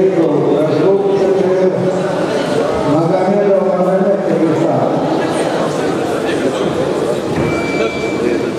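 Men talking near the scoring table in a large sports hall, their voices echoing slightly over the hall's background murmur.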